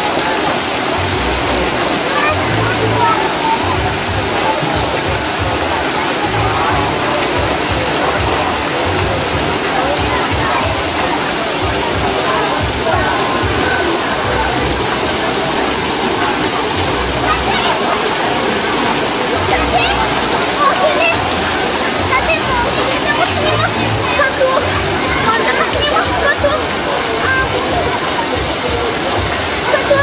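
Steady rush of flowing and splashing water at a water park, with the voices of a crowd mixed in throughout.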